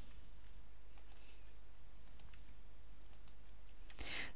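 Steady low background hiss with a handful of faint, sharp clicks scattered through it.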